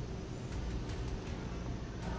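A steady low rumble from a horror film teaser's soundtrack, with a few faint high ticks.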